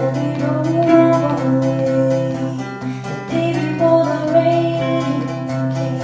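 Live acoustic folk song: a ukulele and a steel-string acoustic guitar strummed together under a woman's sung melody.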